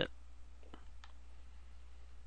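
A single faint computer mouse click a little under a second in, over a low steady hum.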